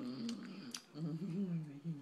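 A toddler's wordless, hummed vocalizing, a wavering voice that dips and rises, broken by a few short mouth clicks.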